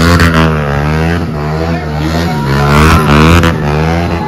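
Stunt motorcycle engine revved hard and repeatedly, its pitch rising and falling over and over as the rider spins and pivots the bike.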